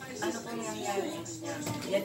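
People talking, not clearly, with music playing underneath.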